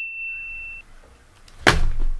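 A steady, high-pitched electronic beep that stops a little under a second in, followed near the end by a short rush of noise.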